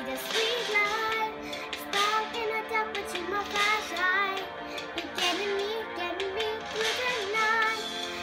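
A young girl singing a song, accompanying herself on an electric piano.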